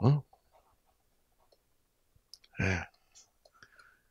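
Faint, scattered small clicks from a small object being handled in the hands, in the gaps between two brief spoken words.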